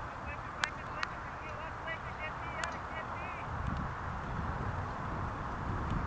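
A bird calling in quick runs of short, repeated chirps during the first half, over wind noise on the microphone, with two sharp knocks about half a second apart near the start.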